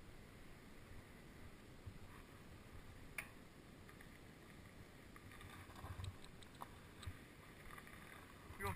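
Near silence with a faint low wind rumble on the microphone, broken by one sharp click about three seconds in and a brief rattle of small clicks around six seconds, as the mountain bike is handled.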